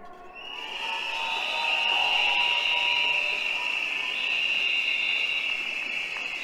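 A crowd of strikers blowing many whistles at once in approval, a shrill steady din that swells over the first second and then holds.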